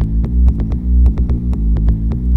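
Oldskool house music played from vinyl: a deep, pulsing bassline under quick, steady hi-hat ticks.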